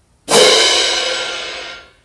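Hand-held orchestral crash cymbals struck once. They ring for about a second and a half and are then choked off abruptly, damped to end the note at a marked length.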